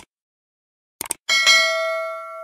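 Subscribe-button animation sound effect: quick mouse clicks about a second in, then a bright notification-bell chime that rings on and slowly fades.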